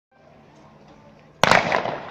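A single starter's pistol shot, sudden and loud, about one and a half seconds in, with a short echo trailing off: the start signal of a 200 m sprint. Before it there is only faint stadium background.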